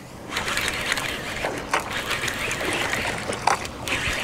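Fishing reels being cranked as two anglers fight fish at once: a steady run of fine clicking and whirring from the reels, over wind and water noise.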